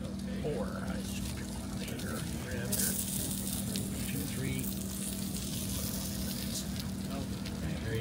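Ribs sizzling on a red portable grill while they are served off it, a high hiss that comes up about three seconds in and eases off near the end, over a steady low hum and low background voices.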